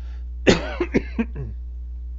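A person coughing: one sharp cough about half a second in, followed by a few quicker, weaker coughs over the next second.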